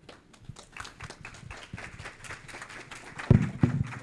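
Audience applauding, a dense patter of hand claps starting just after the talk ends, with two loud low thumps near the end.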